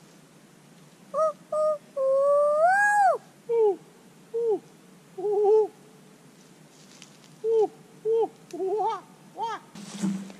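A child's high voice making wordless hooting, humming-like notes. Two short notes come first, then one long note that rises and drops away about three seconds in, then a string of short rising-and-falling notes.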